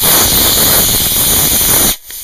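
Model rocket motor firing in place: a loud, steady rushing hiss for about two seconds that cuts off suddenly at burnout. The rocket does not lift off and stays on its pole.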